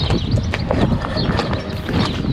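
Footsteps crunching on gravel, an uneven run of steps, over a steady rumble of wind on the microphone.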